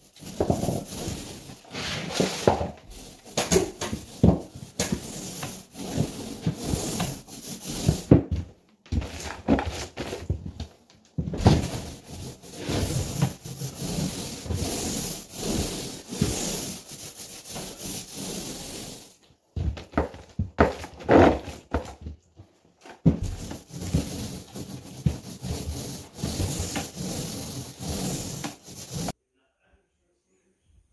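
Paint roller on an extension pole rubbing and rolling through a paint tray and over drywall, in irregular noisy strokes with short pauses, stopping about a second before the end.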